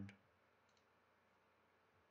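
Near silence: room tone, with one faint sharp click just after the start.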